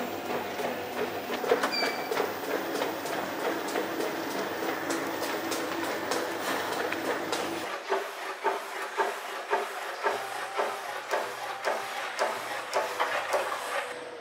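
Treadmill running, its belt and motor humming under a runner's rhythmic footfalls. About eight seconds in the sound changes abruptly to lighter, irregular clicking without the hum.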